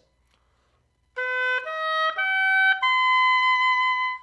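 Oboe playing an ascending B major arpeggio, B, D-sharp, F-sharp, B, starting about a second in, with the top B held longest. It is played with resonance, for a warm, ringing high register.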